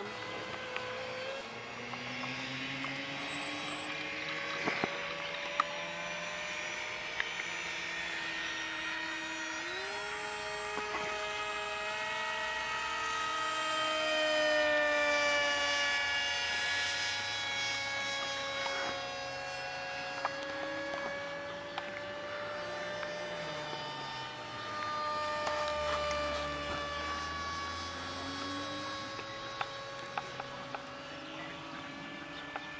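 Radio-controlled model aeroplanes flying overhead: a steady propeller drone at several pitches at once, each slowly rising and falling as the models change speed and pass, swelling a little about halfway through and again near the end.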